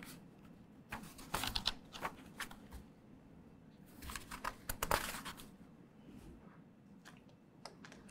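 Faint rustling and small clicks of something being handled close to a microphone, in two bursts, about a second in and about four seconds in, with a few lone clicks near the end.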